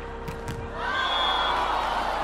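A volleyball spike: two sharp smacks about a fifth of a second apart, the hand striking the ball and the ball hitting the court. About a second in, crowd cheering rises with a brief high whistle tone.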